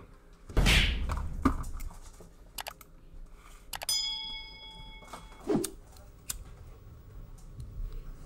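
A dull thump, then scattered sharp clicks, a short bright ringing ping about four seconds in, and another soft knock: handling noises in a small room.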